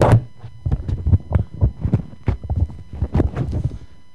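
Microphone handling noise: a dense, irregular run of thumps and rubbing knocks that starts suddenly, loud and close, as the presenter's microphone is fitted or adjusted, dying away near the end.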